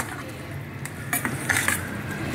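Steel spoon stirring wet, soaked flattened rice (aval) mixed with tamarind water in a stainless-steel bowl. A few short scrapes and clinks of the spoon against the bowl come about a second in and again near the end.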